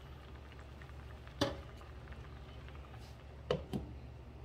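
Pork hock braise simmering quietly in a metal saucepan on a gas stove, under a low steady hum. A sharp knock of a utensil on the pan comes about one and a half seconds in, and two quick knocks near the end as a glass lid is set on the pan.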